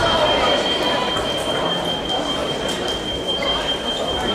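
Busy fencing hall ambience: scattered voices and movement across the pistes, with a few sharp knocks and clicks from the bouts, over a steady high-pitched whine.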